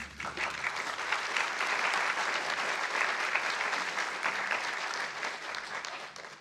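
Audience applauding, with the clapping thinning out near the end.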